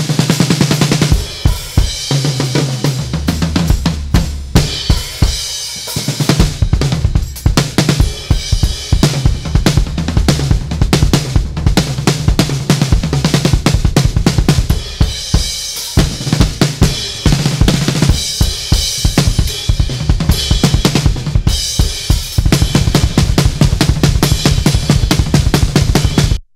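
Playback of a live-recorded jazz-fusion drum kit with a dry 1970s sound and no reverb: a busy groove of kick, hard-hit snare and hi-hat with tom fills, running without a break. The snare was recorded hot enough to clip.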